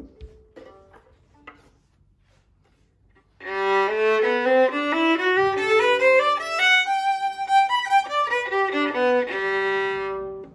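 Struna Classroom 4/4 violin (a Guarneri copy) played with the bow: a phrase that climbs step by step from the low strings to a high note, comes back down, and ends on a long held note. The playing starts about three and a half seconds in.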